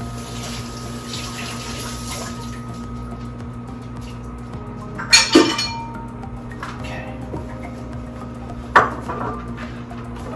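Kitchen tap running as scallions are rinsed at the sink, strongest in the first couple of seconds. Then a few sharp clatters of dishes or utensils, about five seconds in and again near the end, over a steady faint hum.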